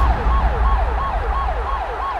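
Ambulance siren sound effect: a fast wailing siren that sweeps up and down about three times a second, growing slightly quieter, over a low rumble.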